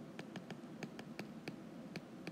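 Stylus tip tapping and scratching on a tablet's glass screen while handwriting: a faint series of light ticks, several a second.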